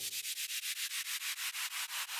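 A steady rhythmic hissing pulse, about six or seven strokes a second, shaker- or brushed-hi-hat-like, left playing on its own once the keyboard chord cuts off.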